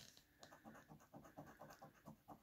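A coin scraping the coating off a scratch-off lottery ticket in a quick run of short, faint strokes, starting about half a second in.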